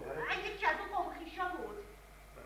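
Speech: a woman speaking in a high voice whose pitch rises and falls, trailing off near the end.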